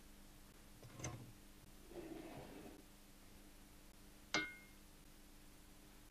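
Quiet kitchen handling sounds over a faint steady hum: a soft knock about a second in, a brief rustle or scrape, then one sharp clink of metal or glass with a short ring.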